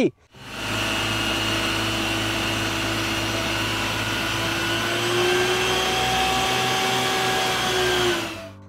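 Water tanker truck's engine and pump running steadily while its roof water cannon sprays: a rushing hiss over a steady engine hum. The note lifts slightly about five seconds in.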